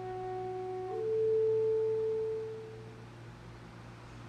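Alto saxophone playing soft, nearly pure held notes. One note steps up to a higher one about a second in, which swells and then fades away by about three seconds in.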